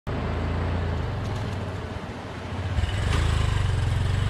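Small motorcycle engine running with a steady low pulsing, growing louder about three seconds in.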